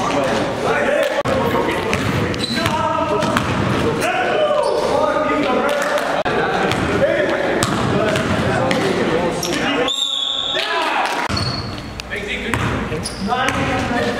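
Basketball dribbling and bouncing on a gym floor, with players' indistinct voices and calls echoing in a large hall. A brief high squeak about ten seconds in.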